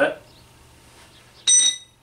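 A single sharp metallic clink about a second and a half in that rings briefly at a high pitch, like metal parts striking each other on an engine hanging from a hoist chain.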